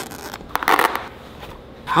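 A boxing glove being taken apart by hand: a brief burst of scratchy rustling and tearing about half a second in, as the glove's padding is cut and pulled.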